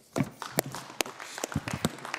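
Audience applauding: a ragged run of sharp hand claps.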